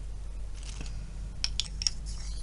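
A small plastic jar of loose mineral pigment handled and its lid twisted: a faint scuff, then three or four sharp little clicks in the second half, over a steady low hum.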